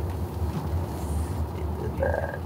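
Steady low rumble of a car heard from inside its cabin: engine and road noise of the car under way.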